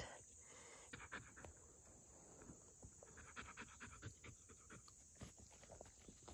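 Near silence: a dog's faint panting, with scattered faint ticks and a steady high insect hum.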